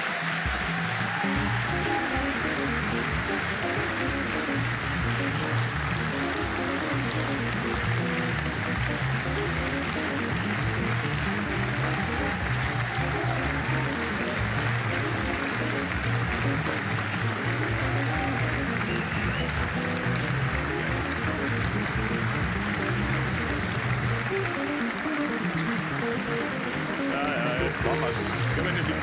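Audience applauding steadily over playing music.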